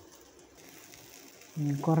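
Faint steady sizzling of banana-leaf-wrapped parcels cooking in a covered pan, then a voice starts speaking about a second and a half in.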